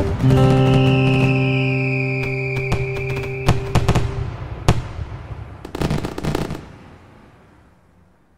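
Fireworks: one long whistle that falls slightly in pitch, then scattered sharp cracks and crackles, fading out over the last few seconds. This plays over the held final chord of strummed guitar music, which dies away in the first few seconds.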